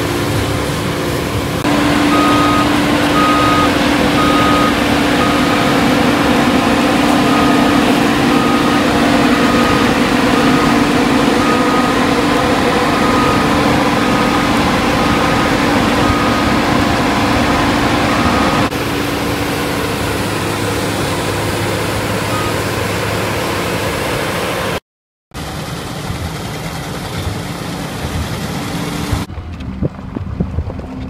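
Combine harvester running steadily under load, a dense engine and machinery hum with a steady drone. From about two seconds in until about two-thirds of the way through, a short warning beep repeats about one and a half times a second; the sound changes abruptly at several points and drops out briefly near the end.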